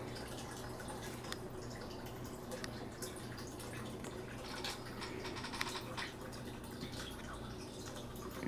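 Quiet room tone: a steady low hum with a few faint scattered ticks.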